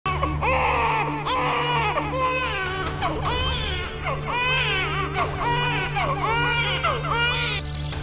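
A baby crying in a run of short, repeated wails, over a low, steady droning music bed.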